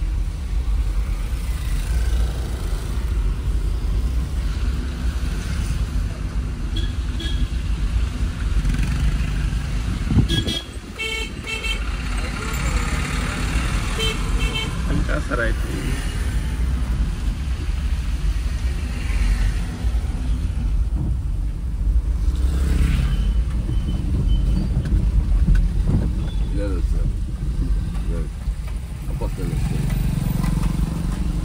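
Maruti Suzuki A-Star on the move, its engine and road noise a steady low rumble inside the cabin. About ten seconds in, a vehicle horn toots several short times.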